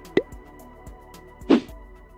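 Logo-sting sound effects: two short cartoon-like pops, the first with a quick upward bloop and the second louder about a second and a half in, over a faint held music tone.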